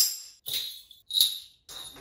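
A hand-held jingle percussion instrument shaken in four short, sharp strokes, each a bright metallic jingle, spaced about half a second apart.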